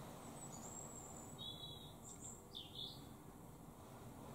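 A bird singing faintly: a few high, thin whistled notes, then a quick swooping phrase about two and a half seconds in, over low steady background noise.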